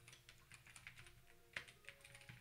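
Faint typing on a computer keyboard: a quick, irregular run of soft key clicks, one a little louder about one and a half seconds in.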